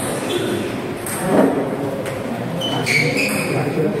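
Table tennis rally: a celluloid ball struck by paddles and bouncing on the table, heard as short, sharp pings a few times, over background voices in a large, echoing hall. A shout of "Oh, shot" comes at the very end.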